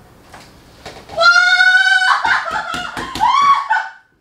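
A woman screaming in pain as her leg is bent up in a forced stretch: one long high-pitched scream about a second in, then a run of broken, shorter cries with a few sharp knocks.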